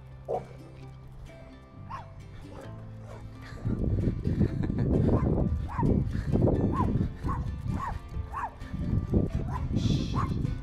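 A dog barking repeatedly in short sharp barks, about one or two a second, getting louder about four seconds in.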